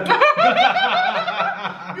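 Laughter: a run of quick, repeated chuckles.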